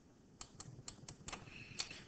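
Faint, irregular light clicks and taps of a stylus on a writing surface, about eight in two seconds, as a word is handwritten.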